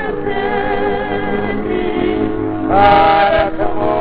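Music with singing: long held notes with vibrato, and a louder held note about three quarters of the way in.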